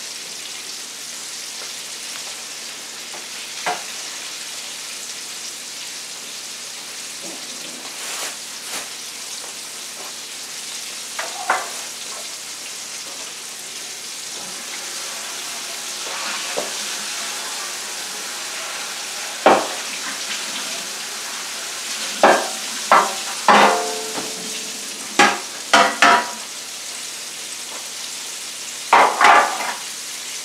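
Flour-dredged pieces frying in hot oil in a skillet, a steady crackling sizzle. In the last third, several sharp knocks and clatters sound over it.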